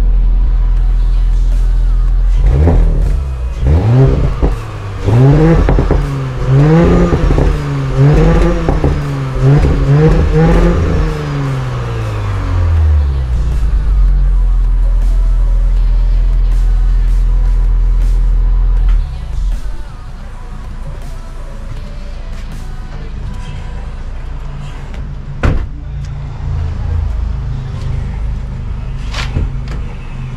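Audi S5's V6 engine blipped through about five quick revs from idle, each rising and falling in pitch, then settling back to a steady idle that turns quieter about two-thirds through, with one sharp knock later on. The engine runs rough, which the owner puts down to three-year-old fuel and possibly faulty intake manifold wiring.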